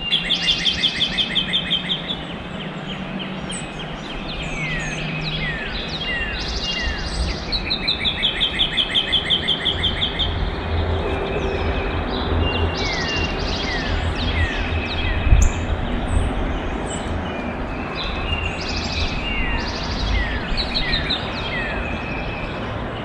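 Several songbirds singing: a rapid trill, about five notes a second, at the start and again around a third of the way in, with many short falling whistles between, over a low background rumble. A single sharp tap is heard about two-thirds of the way through.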